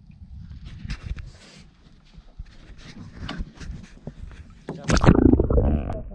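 Wind and water noise on a small open fishing boat at sea, a low rumble with scattered knocks. About five seconds in, a louder, muffled rush of water takes over, heard through an underwater camera.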